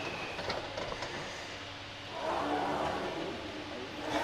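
Gym background noise with a few faint clicks about half a second in, then a brief voice-like sound a little after the middle.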